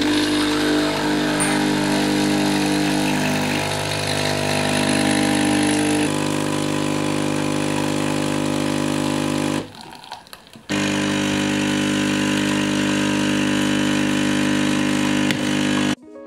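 Nespresso capsule coffee machine running as it brews, a loud, steady buzzing hum. It changes slightly about six seconds in and stops for about a second near the middle before resuming.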